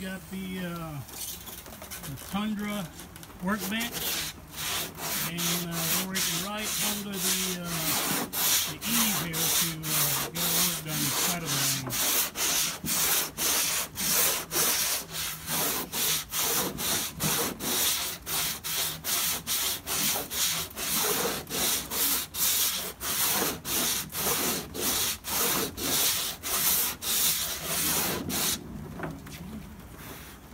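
Hand sanding with a 60-grit sanding block on a fiberglass-and-epoxy patch on a KR2S wing. The block scrapes back and forth in a steady rhythm of about two strokes a second, starting a few seconds in and stopping shortly before the end.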